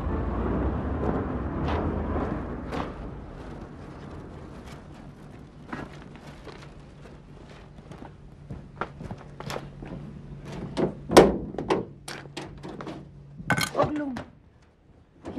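A music cue fades out over the first few seconds. After it come irregular footsteps and sharp knocks on hard ground, with one loud thump about eleven seconds in.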